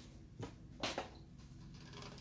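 Quiet room with a few faint, brief rustles and taps as a sheet of patterned scrapbook paper is picked up and handled.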